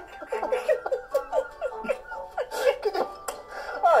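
Laughter: a run of short, high, breathy laughs, one after another, with a louder stretch about two and a half seconds in.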